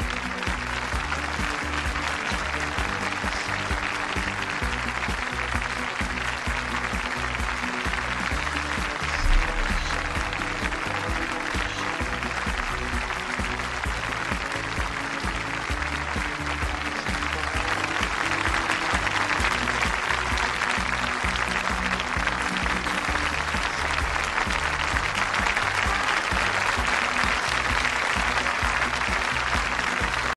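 Audience applauding over music with a steady low beat, the applause growing louder a little over halfway through. A single low thump stands out about nine seconds in.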